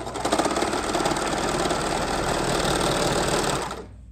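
Singer serger (overlock machine) running at speed with a rapid, even stitching chatter as it overlocks the raw edge of fleece fabric, then stopping abruptly shortly before the end.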